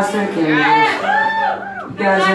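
Live roots-rock band playing with a lead vocal: singing over mandolin, fiddle and electric guitar, with a low note held underneath and the voice gliding in long arcs.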